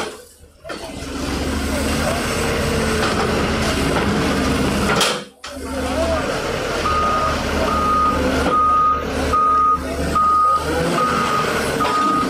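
Hyundai Robex 170W-9 wheeled excavator's diesel engine running under load, and from about seven seconds in its reversing alarm beeping evenly, a little more than once a second.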